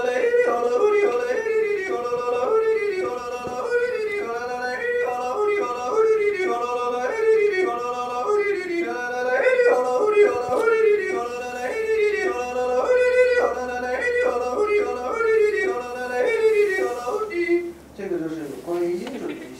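A man yodeling unaccompanied, flipping quickly between a low chest voice and a high falsetto several times a second, with a longer held high note about two-thirds of the way through. It is a demonstration of hitting each note at the exact pitch across the register breaks.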